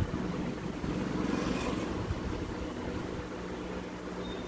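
Table-mounted industrial sewing machine running and stitching through layered fabric, a steady motor hum with rapid needle ticking. It is busiest through the middle and eases off near the end.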